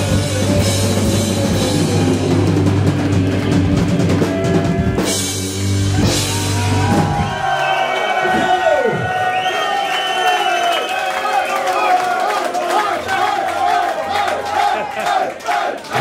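Heavy metal band playing live, loud drums and bass. About halfway the full band drops out, leaving guitar notes that dive steeply in pitch and then held, bending notes, with crowd shouts and clapping toward the end.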